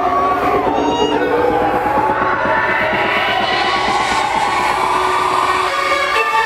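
Electronic dance music played by a DJ, a build-up with a slowly rising sweep over a fast, even beat, with a crowd cheering. Near the end the bass cuts out, as before a drop.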